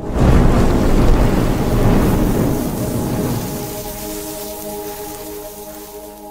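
Cinematic intro sting: a deep rumbling boom swells up at the start and slowly fades, with a sustained chord ringing beneath it and dying away at the end.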